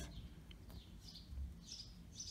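Faint bird chirps, a few short high calls about halfway through and again near the end, over quiet room tone.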